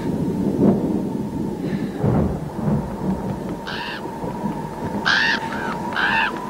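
A low rumble with a faint steady tone over it. About halfway through, short, high, arching bird-like calls begin and repeat about four times, closer together toward the end.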